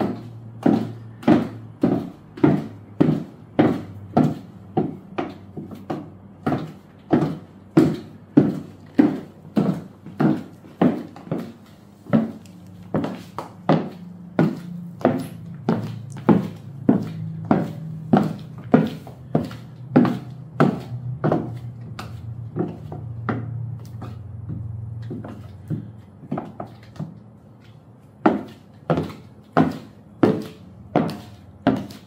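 Footsteps in six-inch stiletto platform mules on a polished hardwood floor: the heels and platforms clack about twice a second, easing off for a few seconds near the end before picking up again. A steady low hum runs underneath.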